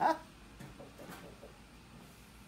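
The last burst of a laugh right at the start, then a few faint, indistinct voice sounds and quiet room tone.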